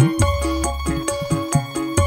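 Dangdut koplo band music: a fast, even drum pattern with bending low drum strokes over a steady bass and held melody notes.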